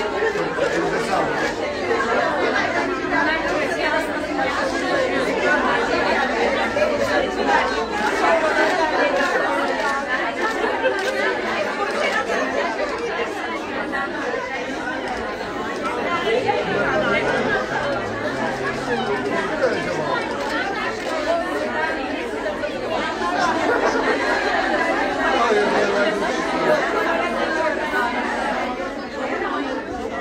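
Crowd chatter: many people talking at once in a room, a steady babble of overlapping conversations with no single voice standing out.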